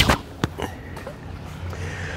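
Pan Slings sling snapping as it is whipped around and lets go of a stone: one sharp snap at the start and a fainter click about half a second later, over a low steady rumble.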